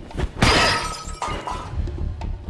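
A sudden shattering crash about half a second in, as something is smashed during a film fight scene, trailing off over about a second.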